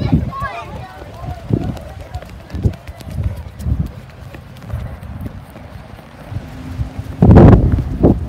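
Footfalls of someone running while holding the microphone, heard as low thumps about once a second with handling and wind rumble. Children's voices call out near the start, and a loud rough rumble of wind or handling comes near the end.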